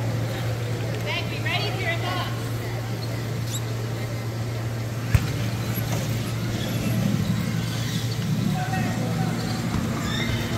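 Power soccer play on a gym floor: a steady low hum under indistinct voices, a few quick squeaks on the hardwood early on, and one sharp knock about five seconds in, typical of a power wheelchair's front guard striking the ball.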